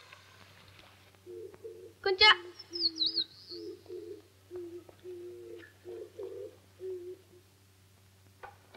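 A dove cooing in a long series of short, low notes, with a brief loud call about two seconds in and a higher, wavering bird chirp just after it.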